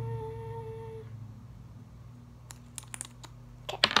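A person humming one short steady note for about a second, then a few light clicks and taps from a pen being handled over a lotion container, with a sharper cluster of clicks near the end, over a steady low background hum.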